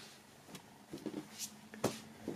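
Faint handling of a folded cotton T-shirt on a wooden table: soft rustles and a brief swish of the fabric, then a single sharp tap near the end.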